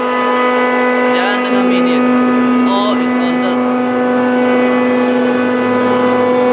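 Chiller plant machinery, chillers and water pumps, running together with a loud, steady hum: a strong low tone with a higher tone above it, and the low tone grows louder about a second and a half in.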